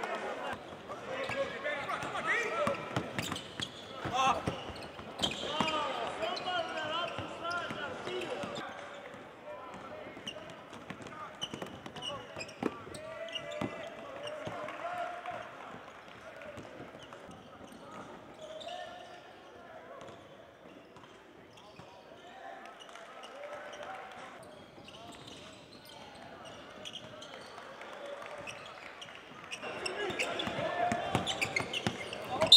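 Basketballs bouncing on a hardwood court, with players' indistinct voices and shouts around them in a large echoing hall. Busiest and loudest in the first third, quieter after that.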